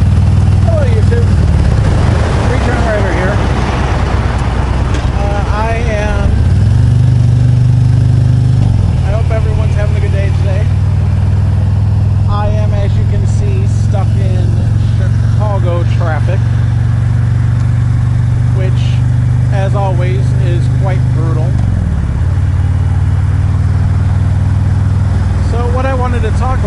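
Harley-Davidson touring motorcycle's V-twin engine running at highway speed, heard from the rider's seat with wind rush. Its steady drone rises about six seconds in, drops back near nine seconds and dips again near twenty-two seconds.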